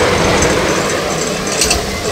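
Engineless soapbox cart rolling past on asphalt: a rushing of its wheels on the tarmac, loudest at the start as it passes close and easing as it moves away, with a few light rattling clicks late on.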